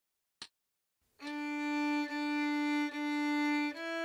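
A metronome clicks once just under half a second in. About a second later a violin starts playing a beginner sight-reading line: three even bowed notes on the same pitch (D), then a step up to E near the end, in time with the beat.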